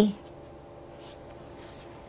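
A marker writing on paper: a few faint, soft strokes.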